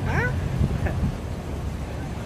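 A brief high, squealing laugh gliding in pitch at the very start, then a steady low background rumble.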